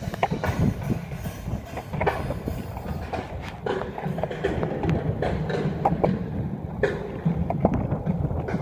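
Skateboard wheels rolling on a concrete parking-garage deck: a steady low rumble broken by irregular clacks and knocks.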